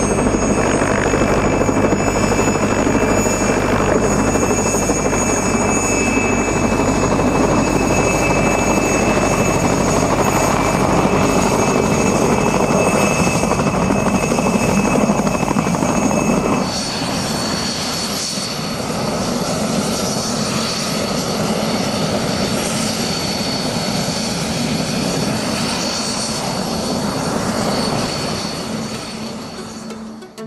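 Small helicopter running on the ground with its rotor turning: steady engine and rotor noise with high, steady whines. A little past halfway through, the sound changes abruptly and drops slightly in loudness.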